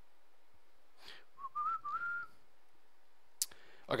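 A person whistling a few short notes that step upward in pitch, lasting about a second.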